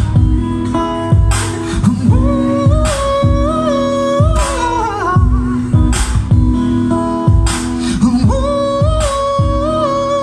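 Live acoustic guitar playing over a steady low beat, with a long wordless sung note held twice, each time sliding down in pitch at its end.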